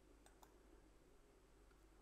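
Near silence with two faint clicks in quick succession early on, a computer mouse double-click opening a program.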